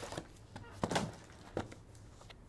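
Three light knocks and taps, the loudest about a second in, as a shrink-wrapped cardboard box of trading cards is turned in the hands and set down on a table mat.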